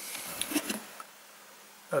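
Faint room tone with a couple of soft small sounds about half a second in, then near silence.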